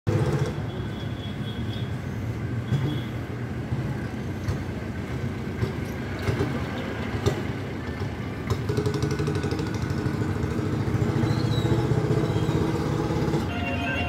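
Steady low engine rumble, getting louder about eight and a half seconds in, with a few faint clicks.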